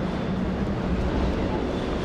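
Steady rushing noise with a low rumble underneath.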